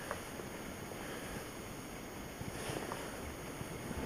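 Quiet, steady background hiss of a boat's cabin with no distinct event.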